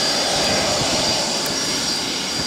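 Rear-mounted turbofan engines of a Bombardier CRJ regional jet running steadily on the ground at taxi. The sound is a steady rush with a thin high whine running through it.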